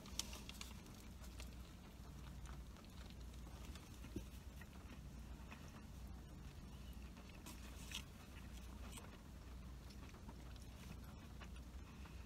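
Faint chewing of a mouthful of gyro on tough, chewy flatbread, with soft scattered mouth clicks over a low steady hum.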